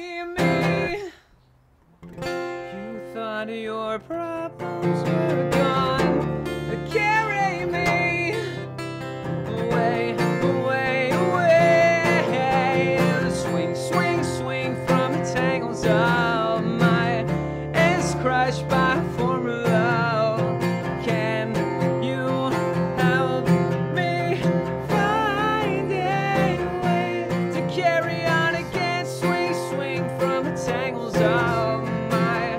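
Acoustic guitar played live with a male voice singing over it. The music breaks off to near silence for about a second, just after the start, then resumes and runs on.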